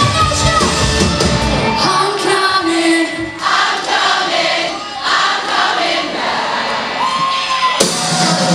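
Live pop-punk rock band playing. About two seconds in, the drums and bass drop out, leaving a female lead vocal and crowd voices over a thin backing. The full band comes crashing back in at the very end.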